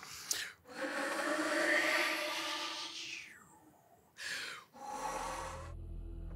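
Breathy air-tone flute playing: a long rush of air with faint pitches held inside it, shaped like vowels, then a shorter breath of air. Near the end a low music bed with bass comes in.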